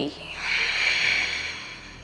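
A woman's long audible out-breath, a soft breathy hiss that swells and then fades over about a second and a half.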